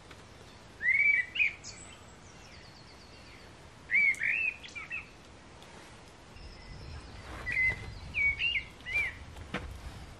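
A songbird singing short phrases a few seconds apart: one about a second in, another at four seconds and a run of notes near the end, with a faint, fast falling series of high notes in between. A low rumble comes in past the middle, and there is a sharp click near the end.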